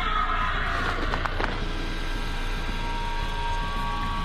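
Vacuum cleaner motor running: a steady whine over a hiss of rushing air, with a few light knocks about a second in.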